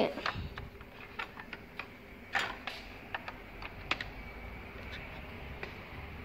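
Scattered light clicks and taps of a power cord and its plug being handled at a TV's power supply board socket, with one louder click about two and a half seconds in.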